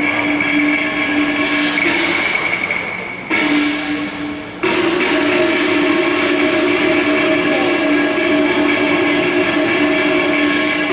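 Cantonese opera accompaniment playing long, steady, reedy horn-like notes, with abrupt breaks a little past three seconds and again near four and a half seconds.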